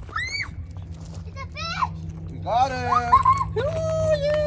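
Young children squealing and shrieking with excitement as a fish is landed: short high cries that swoop up and down, a cluster of them in the second half, and a longer held cry starting near the end. A steady low hum runs underneath.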